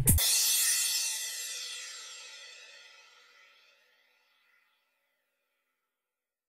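The final cymbal crash of an electronic house track rings out alone after the beat stops, fading away over about three seconds.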